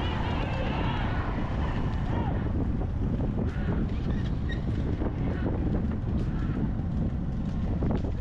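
Wind buffeting the microphone of a moving vehicle, over a steady low rumble.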